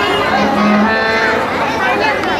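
Performers' voices speaking through a stage microphone and loudspeaker, with one low drawn-out voiced sound, about half a second long, starting about half a second in.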